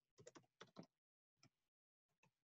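Faint typing on a computer keyboard: a quick run of keystrokes in the first second, then a few more, with dead silence between.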